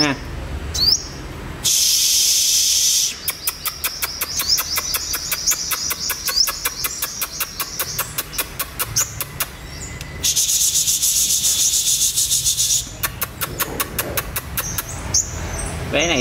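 Caged male olive-backed sunbird singing long runs of fast, clipped chattering notes, several a second. Twice, for a second or two each, a person hisses at it to spur it to sing.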